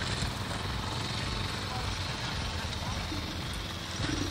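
Steady outdoor background noise with faint distant voices and vehicle engines.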